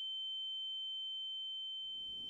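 A steady high-pitched electronic tone: a pure sine tone held at one pitch as a sound effect, fading slightly.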